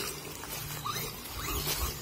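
Brushless electric RC monster truck driving over dry leaves and grass: a faint motor whine that rises briefly a couple of times as it accelerates, with light rustle from the tyres.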